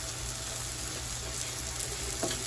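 A block of ground turkey sizzling steadily in a frying pan greased with cooking spray.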